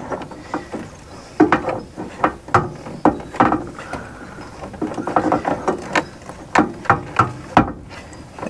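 Threaded ignition-switch bezel ring on a 1968 Chevrolet panel truck's dashboard being unscrewed by hand, making irregular clicks as the ring and switch turn against the dash.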